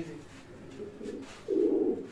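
Racing pigeons cooing softly in a low register, with a louder coo about one and a half seconds in.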